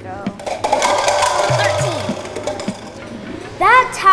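Plastic party cups clattering against each other, mixed with children's excited voices, and a child's loud rising exclamation near the end.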